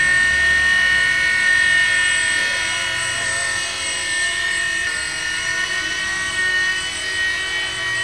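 Micro electric RC helicopter in flight: a steady high-pitched whine from its small motor and spinning rotor, with several overtones, shifting slightly in pitch partway through as it manoeuvres.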